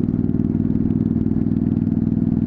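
Honda CTX700's parallel-twin engine running steadily at road speed, its pitch holding level throughout.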